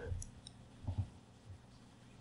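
Computer mouse clicks at a desk: a quick pair about a second in and a fainter single click shortly after, over a faint low hum.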